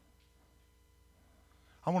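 Quiet room tone with a faint steady hum during a pause, then a man's voice starts speaking near the end.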